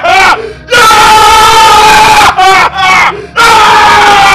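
A man yelling loudly in jubilation: a few short whooping cries, then a long held high shout of about a second and a half, and another long shout near the end.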